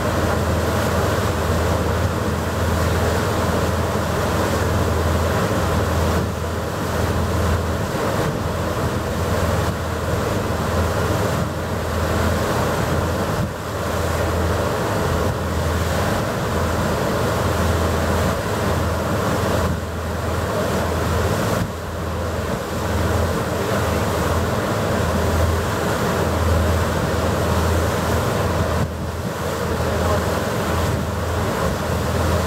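A ferry under way: the steady low hum of its engines under the rushing wash of the propeller wake behind the stern, with wind buffeting the microphone.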